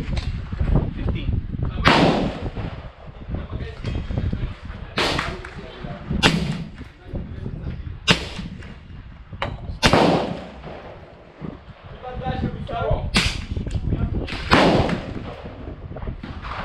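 Shots from a semi-automatic .22 LR rifle, a Smith & Wesson M&P15-22, fired singly, about seven in all and unevenly spaced one to four seconds apart. Each shot is sharp and rings on briefly.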